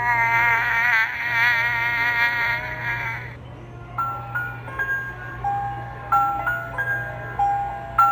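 Starlite Pals Singing Minion bedtime toy playing its electronic sound: a high, wavering minion voice singing for about three seconds, then a slow chiming lullaby melody of single notes.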